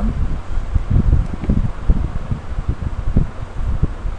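Irregular low rumbling and bumping of something rubbing and knocking against the microphone, with no voice.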